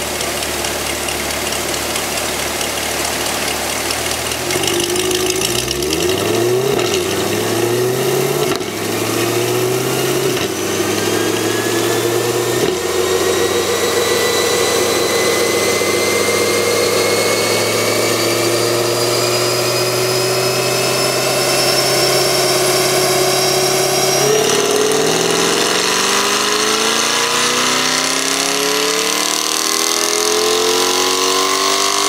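2020 C8 Corvette's V8, breathing through Soul Performance sport catalytic converters on the stock exhaust, idling and then run up hard on a chassis dyno in a power pull. The revs climb in quick steps about four seconds in, then rise slowly and steadily for some ten seconds with a high whine rising alongside, break about 24 seconds in, and climb again.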